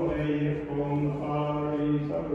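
Sikh devotional chanting of gurbani in long, steadily held notes.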